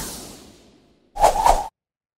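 Cartoon title-card whoosh sound effects: a swish fading away over the first second, then one short swish about a second in, lasting half a second.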